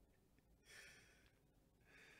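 Near silence with two faint breaths from the speaker close to the microphone, one about half a second in and another near the end.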